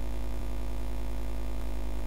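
Steady low electrical hum with a buzzing row of overtones above it, unchanging throughout, broken by one or two faint ticks.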